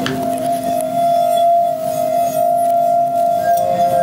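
Stemmed wine glasses sung by rubbing fingertips around their rims: one steady ringing tone, joined near the end by a second, lower one.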